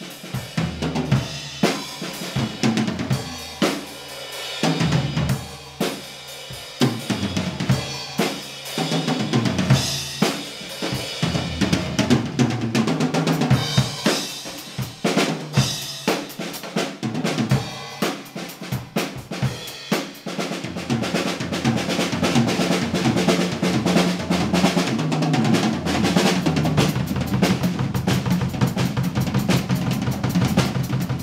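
Premier XPK drum kit being played: kick drum, snare, hi-hat and cymbals in a steady stream of hits with fills. About two-thirds of the way in, the playing becomes denser and more continuous, like fast rolling.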